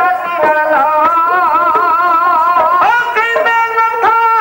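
Dhadi music: a sarangi playing a long, wavering melody line, with a few sharp strokes on the dhadd hourglass drums.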